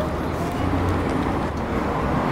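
Steady ambient city noise with a low traffic rumble.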